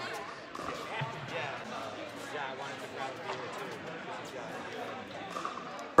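Distant voices echoing in a large indoor hall, with a few sharp knocks of pickleballs bouncing on the court and off paddles.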